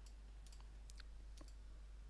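Near silence, with a handful of faint, sharp clicks spaced irregularly through it.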